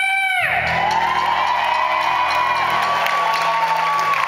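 A rock band's last sung note breaks off about half a second in. The final chord then rings out on electric guitar and bass, with a long held high note, while the crowd cheers and whoops.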